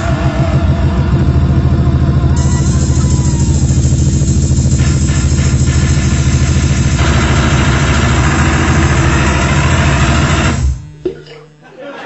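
A band playing loud, heavily distorted music live: a fast-pulsing low drone under a harsh upper layer, which cuts off suddenly about eleven seconds in, leaving a faint low hum.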